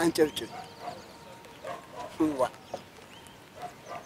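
Two short vocal sounds about two seconds apart, one right at the start and one just past the middle, over a faint outdoor background with a few high chirps near the end.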